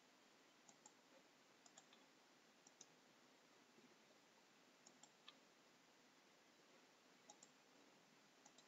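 Faint computer mouse clicks, mostly quick pairs like double-clicks, several times over a low steady hiss.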